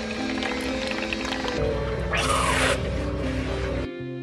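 Background music over a Keurig single-serve coffee maker brewing into a paper cup. A low pump hum and coffee pouring run under the music, with a short hiss about halfway through. The sound cuts off suddenly just before the end.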